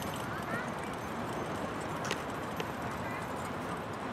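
Hoofbeats of a pair of carriage horses trotting on a sandy arena surface, heard over a steady outdoor background.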